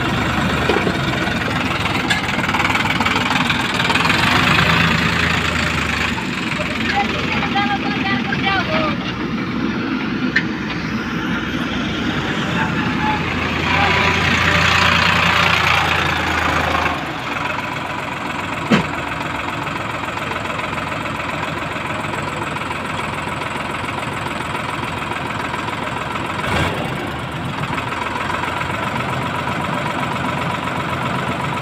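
Sonalika DI 740 III tractor's diesel engine working hard under load in soft soil, pushed up in two louder stretches, then settling to a steadier, lower run about 17 seconds in. A single sharp knock sounds about 19 seconds in.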